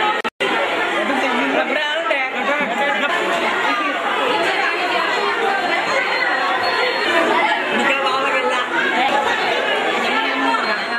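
Many children's voices talking over one another in a large room, a steady crowd hubbub with no single voice standing out. The sound drops out for an instant just after the start.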